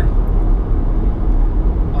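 Steady low rumble of road, tyre and wind noise inside a Nissan Leaf's cabin at about 100 km/h. There is no engine note, the car being electric.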